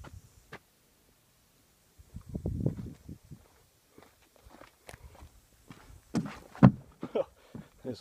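Footsteps on a concrete walkway, with a low rumble about two seconds in and scattered light clicks. A sharp knock shortly before the end is the loudest sound.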